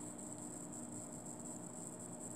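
Quiet room tone: a low steady hiss with faint electrical hum and a thin, high steady whine, with no distinct event.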